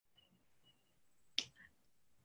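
Near silence on a video call, broken by a single sharp click about one and a half seconds in.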